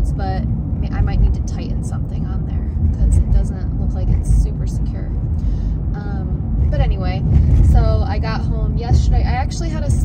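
A woman talking in a car's cabin over the steady low rumble of the car being driven.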